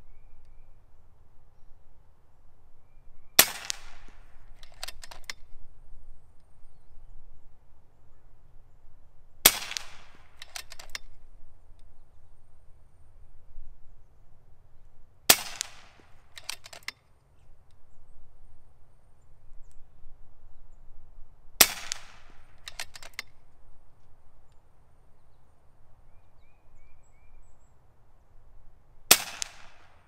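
FX Impact M3 PCP air rifle firing five shots with slugs, about six seconds apart, each a sharp crack with a short tail. About a second and a half after each shot come a couple of light clicks.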